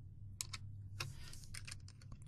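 Computer keyboard being typed on: a few separate keystrokes, spread unevenly, over a faint steady low hum.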